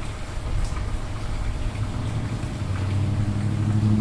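Engine of a road vehicle, a low steady hum that grows louder over the last couple of seconds, as a car or truck draws near.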